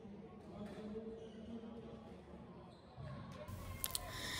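A squash rally, faint: the hard ball knocks sharply off rackets and the court walls at irregular intervals, with two sharper hits just before the end.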